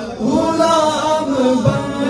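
Male voices singing a naat (Urdu devotional song praising the Prophet Muhammad) into microphones, in long held notes that slide slowly in pitch.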